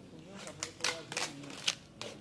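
A few sharp clicks, about five in under two seconds, the loudest near the middle and towards the end, over a man's quiet talk.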